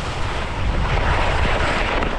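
Wind rushing over the microphone of a camera worn by a downhill skier, a loud steady rumble, with the skis scraping over choppy spring snow.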